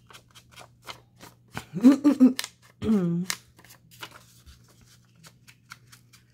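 Foam ink-blending tool dabbed and rubbed along paper edges to distress them, a scattered run of light clicks and scuffs over a low steady hum. Two brief vocal sounds from the crafter come about two and three seconds in and are the loudest things heard.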